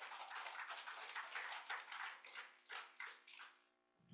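Faint applause from a small congregation: many quick, scattered claps that thin out and die away about three and a half seconds in.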